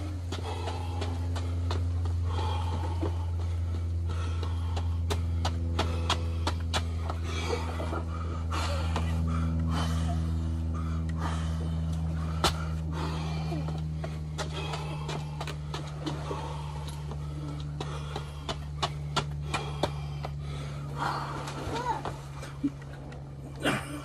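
A steady low mechanical hum with a slowly drifting pitch, overlaid by faint distant voices and scattered short clicks.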